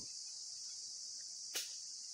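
Steady, high-pitched chorus of insects, with one short click about one and a half seconds in.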